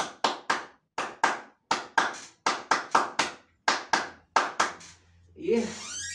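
A person clapping hands, about sixteen sharp claps in uneven groups over four and a half seconds, followed near the end by a short burst of voice.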